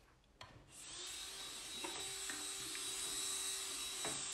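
Electric manicure drill (e-file) starting up about half a second in, then running steadily with a whirring hiss as the rotating bit files along the fingernail and cuticle.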